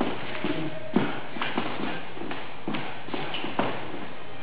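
Shoes stepping and scuffing on a floor during dance steps: several sharp taps at uneven intervals, the clearest about a second in, with shuffling between them.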